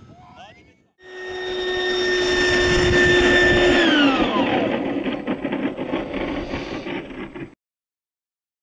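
Electric ducted fan of a radio-controlled model jet, a BAE Hawk, whining at a steady high pitch over a rushing airflow, then spooling down with falling pitch a little before four seconds in while the rush goes on. The sound cuts off suddenly near the end.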